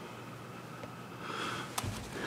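A person drawing an audible breath close to a microphone over quiet room tone, starting past halfway, with a short click near the end.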